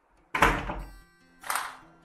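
Two heavy thuds about a second apart, each fading out under sustained musical tones.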